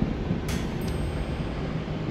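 Inside a car driving on a dirt track: a steady rumble of tyres and engine, with a short knock about half a second in.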